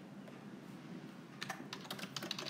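Keyboard typing, faint: a quiet stretch, then a quick run of key clicks in the last half second.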